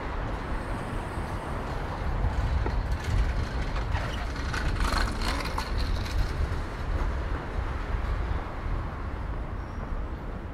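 City street traffic: a motor vehicle passes, loudest around the middle, over a steady low rumble.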